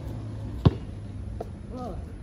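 A basketball bouncing once on the pavement, sharp and loud, about two-thirds of a second in, followed by a fainter knock; a brief voice near the end.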